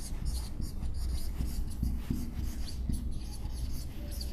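Marker pen writing on a whiteboard: a quick run of short, high scratchy strokes as the letters are formed, over a low steady hum.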